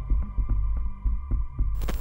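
Background music bed: a deep, throbbing bass pulse with a steady beat under a held tone. It ends in a short noisy swoosh just before the cut.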